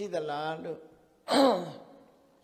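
A man speaking in Burmese, then about a second and a half in a short, loud vocal exclamation with a falling pitch, breathy like a sigh.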